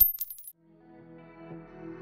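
A short, very high metallic chime with a few quick clicks, a sound effect at the cut. Soft music with sustained chords then fades in and grows louder.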